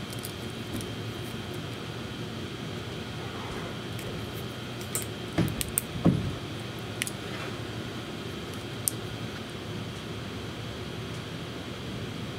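Small metallic clicks and taps from handling needle-nose pliers, wire and a duplex electrical outlet, a few scattered clicks with a cluster about halfway through, over a steady background hum.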